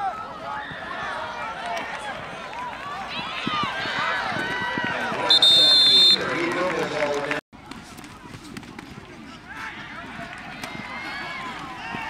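Many voices shouting and calling over a football play, with a referee's whistle blowing once for about a second midway. The sound cuts out for a moment shortly after the whistle.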